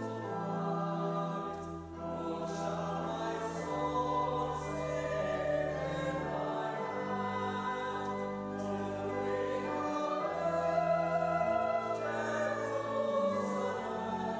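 Congregation singing a hymn, accompanied by a pipe organ whose bass notes are held and change step by step.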